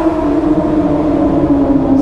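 Inline-four sport bike engine running at speed, a steady tone that falls slightly in pitch.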